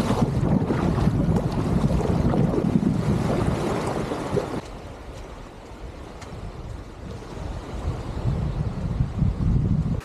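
Wind buffeting the microphone over sea water rushing past a kayak being paddled in to shore, then a sudden drop after about four and a half seconds to quieter wind and waves at the water's edge.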